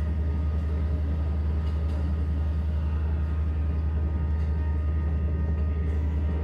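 Live experimental drone music played on a table of electronics: a steady, deep low drone with faint higher tones held above it, unchanging throughout.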